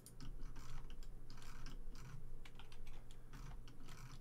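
Computer keyboard keys being tapped in quick, irregular clicks while Blender shortcuts are entered, over a low steady hum.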